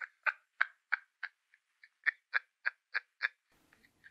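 A person laughing over a phone call: a run of short bursts, about three a second, with a brief pause midway.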